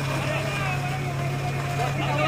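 Fire engine running steadily with a low drone while a hose jet sprays water, and voices talk over it.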